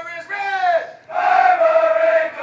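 A group of men's voices crying out loudly together, chant-like: a short falling call, then a long held cry.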